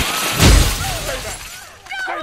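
A loud crash of shattering glass about half a second in, fading out over the next second, with a brief voice cry over it.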